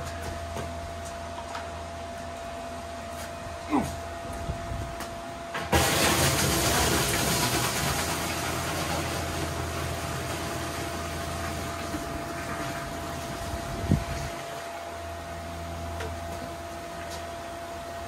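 Red wine poured from a plastic bucket into a stainless steel tank: a sudden rush of splashing liquid starts about six seconds in and slowly eases off over about eight seconds. A knock from the bucket comes before the pour and another as it ends.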